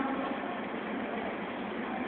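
Steady outdoor street ambience: an even hiss with no distinct event standing out.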